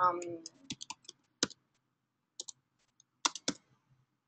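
Keystrokes on a computer keyboard as a search term is typed: about eight separate, irregularly spaced key clicks, with a pause of about a second midway.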